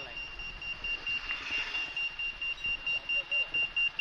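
A high-pitched electronic beep tone, held steady at first, then pulsing about three to four times a second from about halfway through.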